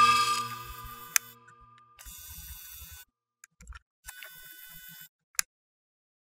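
Logo-intro sound effects: a synthesized chord fading away, then glitchy electronic clicks and two short stretches of crackling static, ending on a sharp click.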